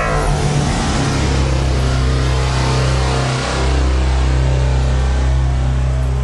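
DTS cinema sound-logo effect: a loud, sustained deep bass drone with a rushing hiss over it, swelling slightly again a little after halfway.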